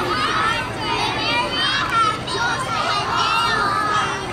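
Many young children's voices chattering and calling out at once, overlapping so that no single voice stands out.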